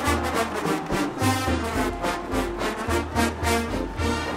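A marching band playing: brass with sousaphones on a moving bass line and a steady beat of drum hits.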